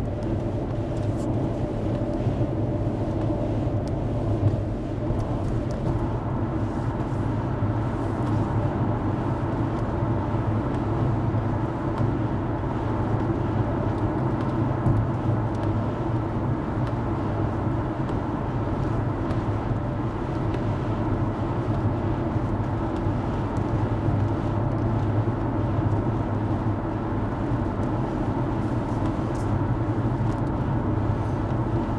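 Steady engine drone and tyre noise heard inside a vehicle's cabin while it cruises at highway speed.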